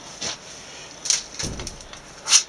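Brief handling noises while working with beeswax foundation sheets at the bench: a short sharp rustle just after a second in, then a dull thump.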